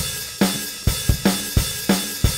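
Valeton GP-5's built-in drum machine playing a rock pattern: kick, snare and hi-hat/cymbal hits about two a second.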